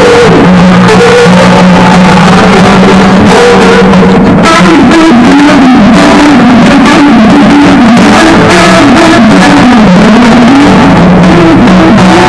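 Live blues music on acoustic guitar, the melody bending and sliding up and down over a steady held lower note, picked up very loud by a phone's microphone.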